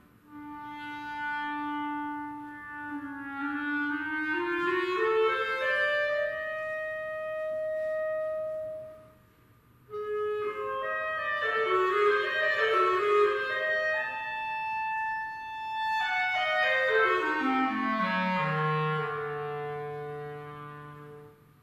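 Clarinet playing a solo melodic passage: a held note, a rising run to a long high note, a brief pause about halfway, then quick ornamented figures and a long falling run down to a low held note.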